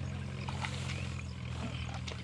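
A steady low motor drone, like an engine running at constant speed, with a few short high chirps over it.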